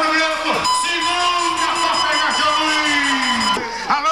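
A rodeo announcer's voice over the arena loudspeakers, stretching out one long drawn-out call. The pitch slides slowly down and then drops away near the end.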